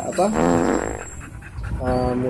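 Chow chow dog making a brief buzzy vocal sound that fades out over about a second.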